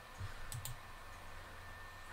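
Two quick, faint clicks about half a second in, from a computer control pressed to advance a presentation slide.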